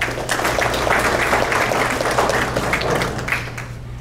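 Audience applauding: many hands clapping at once, dying down near the end.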